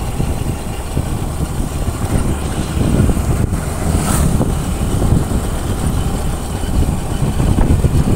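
Steady wind rumble on the microphone mixed with the motorcycle's engine and tyre noise while riding along a road, with a brief hiss about four seconds in.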